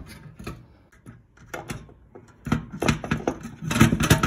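Scattered clicks and knocks of metal parts being handled on a wooden workbench as a copper tube is taken off a fog machine's brass pump fitting. They are sparse at first and busier in the second half.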